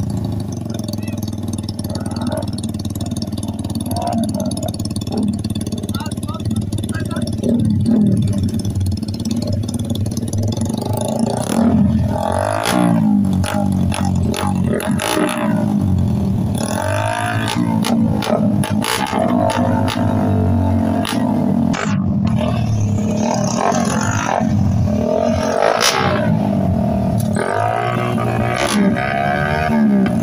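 Small racing motorcycle engines running at the line of a drag race, idling at first and then blipped repeatedly from about halfway on, the engine note rising and falling with each rev, over crowd chatter.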